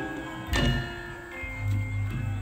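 Javanese gamelan playing: struck metallophone notes ringing on, with a strong stroke about half a second in and a deep low note coming in about midway.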